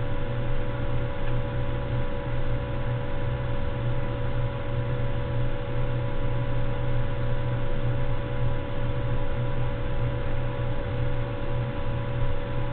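Steady low electrical hum under a constant hiss, with a few faint unchanging higher tones.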